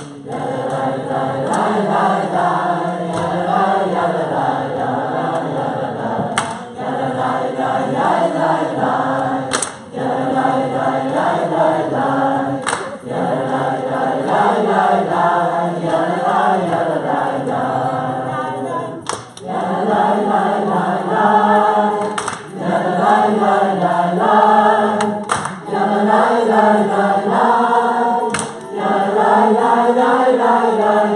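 A roomful of men's and women's voices singing a wordless nigun together, a repeating melody in short phrases with brief breaks between them. The singing grows louder in the second half.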